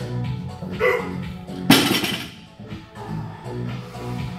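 Background music playing in a gym. A short loud noisy burst comes about two seconds in, just after a briefer pitched sound.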